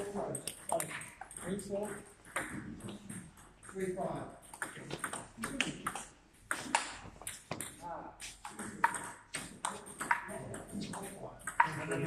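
Table tennis ball clicking off the bats and the table top during a rally, in a quick, uneven run of sharp clicks, with people talking underneath.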